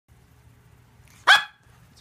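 A dog barks once, a single short, loud bark about a second and a quarter in.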